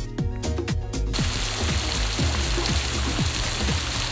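Background music with a steady beat. About a second in, the steady rush of a water spout spraying into a hot-spring pool joins it.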